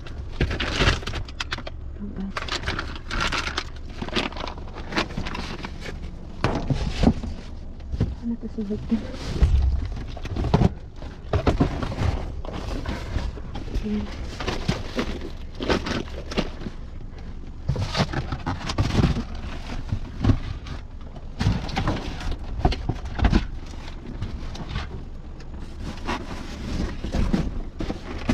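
Cardboard boxes and plastic-wrapped packages being pulled and shifted by hand, with irregular rustling, crackling and dull thuds over a low handling rumble.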